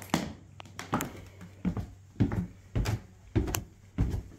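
Footsteps thudding down bare wooden stair treads, about six steps at a steady walking pace of roughly one every half second.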